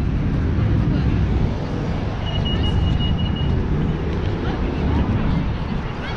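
City street traffic: a steady low rumble of passing vehicles, with a brief high, steady squeal about two seconds in.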